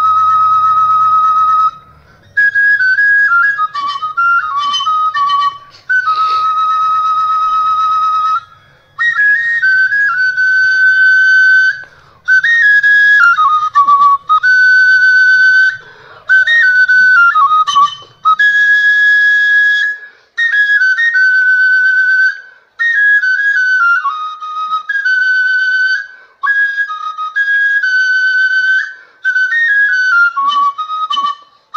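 Small hand-held flute played solo in short phrases: long held high notes alternate with quick warbling runs, each phrase broken off by a brief pause.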